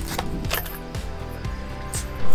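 A small cardboard box is opened and a rotating beacon light is taken out of it: a few light clicks and scrapes of handling. Background music plays throughout.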